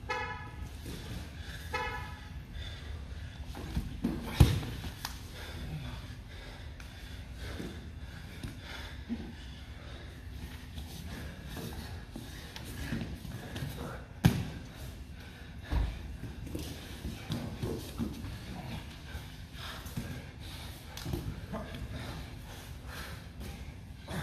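Grappling on foam mats: scuffing with scattered thuds of bodies and limbs hitting the mat, the loudest about four seconds in and about fourteen seconds in. Two short honk-like tones sound at the start and again about two seconds later.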